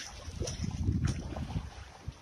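Wind buffeting the phone's microphone: an uneven low rumble that rises and falls in gusts, with a couple of faint clicks.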